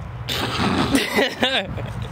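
Voices and laughter of young men, unclear and without words, over a steady low rumble.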